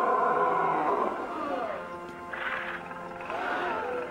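Cartoon lion's voiced roar: one long loud call in the first second and a half, then two shorter calls, over cartoon background music.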